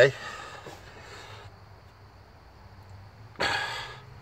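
A man's breathy exhales, the louder one a short burst about three and a half seconds in, over a faint steady low hum.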